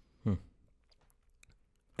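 A man's short 'hmm', then a pause of near quiet broken only by a few faint clicks.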